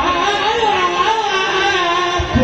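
Live qawwali music: a wavering, sustained melodic line carries on while the hand-drum strokes briefly drop out, the drumming returning just after.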